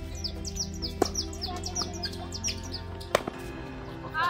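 Two tennis balls struck by rackets during a rally, crisp pops about two seconds apart, with birds chirping rapidly and repeatedly throughout.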